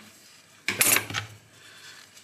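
Steel knife parts clinking and clattering as they are handled and set down on a cutting mat, one short clatter about a second in.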